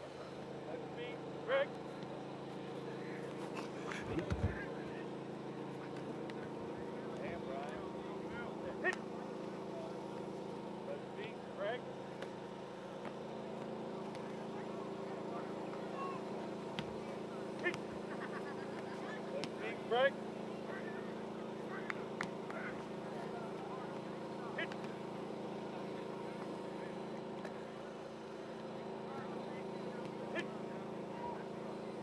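Outdoor football practice ambience: distant shouts and voices of players and coaches over a steady low hum. Scattered sharp knocks and claps stand out a few times.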